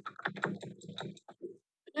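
A rapid, irregular run of clicks and knocks.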